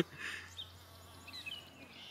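Faint, steady low buzz of a male carpenter bee held pinched between the fingers, vibrating as it struggles to get free.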